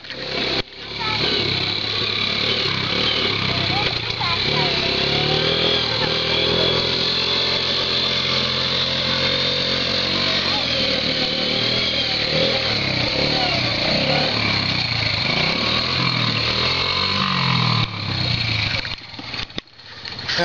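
A child's small four-wheeler engine running as it is ridden around, its pitch rising and falling. It stops near the end.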